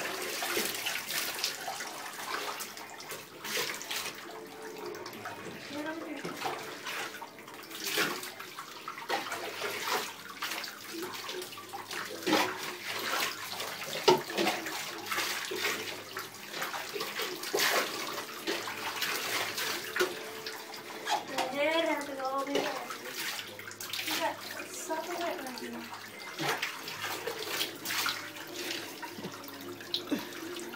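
Water splashing and being poured in a bathtub while a dog is washed, with short splashes from hand-scrubbing and water poured from a cup over its coat.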